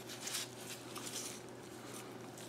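Faint handling noises as gloved hands move a removed rear bicycle derailleur and its chain, over a steady low hum.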